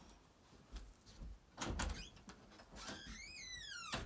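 A few soft thumps, then a door's hinge creaks in a falling squeal for about a second and ends in a sharp knock.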